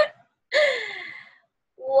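A woman's laughter trailing off, followed by one drawn-out breathy vocal sound that slides down in pitch for about a second, like a gasping sigh.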